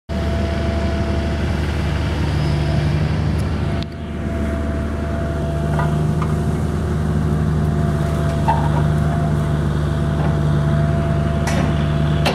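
Caterpillar mini excavator's diesel engine running steadily while it works, with a steady high whine over the low engine drone. There are a few faint knocks as it handles the brush.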